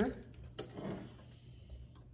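Quiet handling of parchment paper as it is laid and smoothed by hand over a towel on a heat press: a faint rustle, with a sharp click about half a second in and another near the end.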